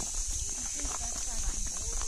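Footsteps on a stony dirt footpath, with people talking quietly, and a steady high hiss underneath.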